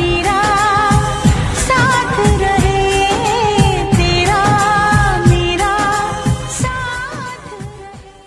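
A Hindi film-style song: a solo voice sings a wavering, ornamented melody over a steady beat. The song fades out over the last two seconds.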